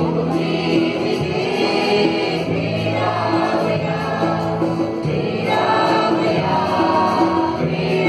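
Mixed choir of women and men singing a Marathi Christian song together, with long held notes that change every second or two.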